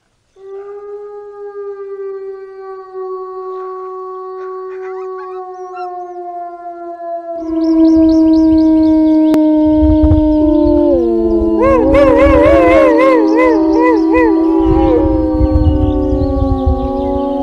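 Grey wolves howling. A single long howl sinks slowly in pitch from about half a second in. At about seven seconds a louder chorus of several overlapping howls begins, some of them wavering and quavering, over a low rumble.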